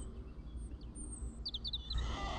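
A songbird chirping: a few thin, high notes, then a quick run of short chirps near the end, over a low steady rumble.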